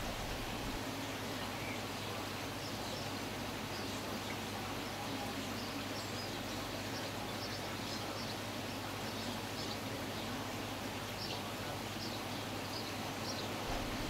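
Steady background hiss of ambient noise with faint, scattered high chirps, like distant birds.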